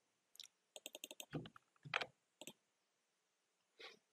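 Faint scattered clicks of a computer keyboard and mouse, several in quick succession about a second in and one more near the end.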